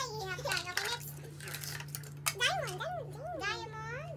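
A young girl's high voice, wordless and rising and falling in pitch, with light clicks and clatter of small plastic toys being handled on a tabletop in between.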